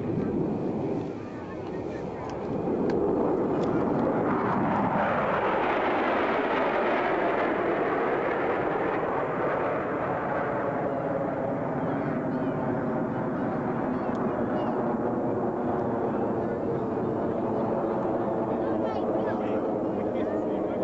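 Jet noise from a flyover of Lockheed F-117 Nighthawks, their General Electric F404 turbofan engines. The noise swells about three seconds in and holds steady, with a sweeping fall in pitch as the jets pass.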